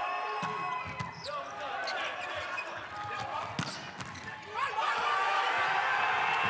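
Volleyball rally in a large indoor hall: a few sharp ball strikes with players' shouts between them, the loudest strike about three and a half seconds in. Just before the five-second mark the rally ends and loud shouting and cheering break out.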